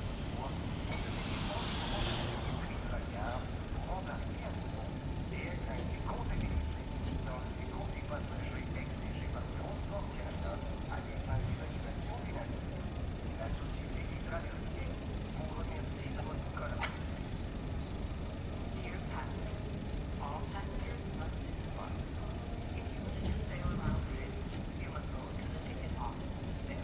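Steady low rumble at the ferry dock, with a brief hiss about a second in and a few faint knocks and clanks scattered through.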